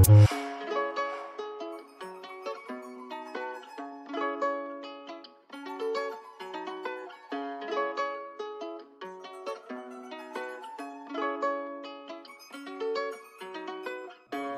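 A plucked-string melody playing alone, with the drill beat's drums and 808 bass dropped out for a breakdown. Short picked notes run in a repeating phrase, with no low end.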